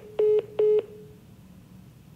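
Phone call-ended tone: three short beeps at the same pitch in quick succession as the call disconnects after the goodbye.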